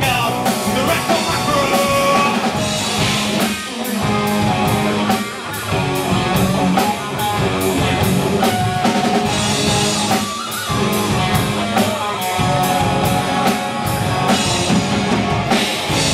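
Live rock band playing: electric guitars, bass guitar and drum kit, with a steady beat of drum and cymbal hits under sustained guitar notes.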